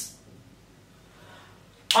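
A man's speaking voice trails off, leaving quiet room tone for about a second and a half, then starts again abruptly near the end.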